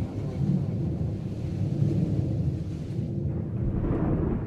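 A low, rolling, thunder-like rumble. The upper hiss dies away about three seconds in, leaving the deep rumble.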